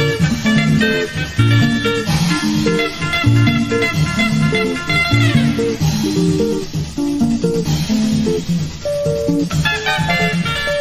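Instrumental band music: interlocking plucked electric guitar lines over a bouncing bass guitar line, with a quick downward slide in the guitar about five seconds in.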